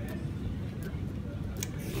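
Low, steady background rumble with a few faint, brief clicks.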